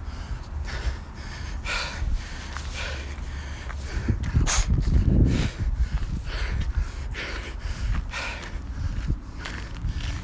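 A man breathing hard and gasping after sprinting a full flight of stairs without a break. The breaths are loud and irregular, the loudest about four and a half seconds in, over his footsteps and a low rumble on the phone's microphone.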